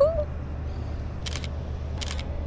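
Two camera shutter clicks, one about a second in and one near the end, over a steady low hum.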